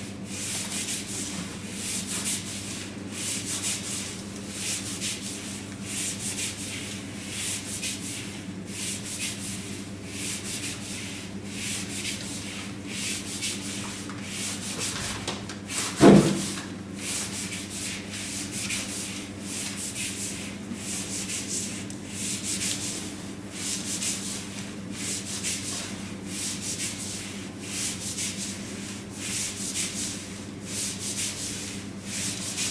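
Repeated rubbing or scraping strokes, a hissy swish roughly once a second, over a steady low hum. A single loud thump about 16 seconds in.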